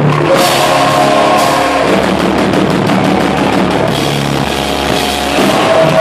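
Live heavy rock band playing loud: distorted electric guitars, bass and a drum kit with crashing cymbals, and a vocalist shouting into a microphone, picked up by a phone in the room.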